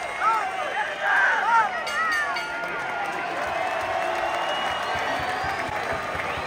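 Boxing arena crowd: several voices shouting over a steady hubbub during the first couple of seconds, then a more even crowd murmur.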